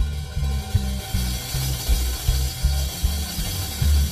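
Free-improvised bass and drums: the bass plucks short, uneven low notes in a halting line, over a dense rattling, noisy percussion wash that thickens about a second in.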